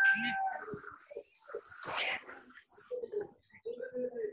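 An animal calling briefly, with a steady high hiss lasting about three seconds in the middle.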